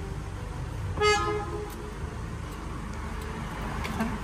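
A short car horn toot about a second in, fading within about half a second, over the steady low hum of a car heard from inside the cabin.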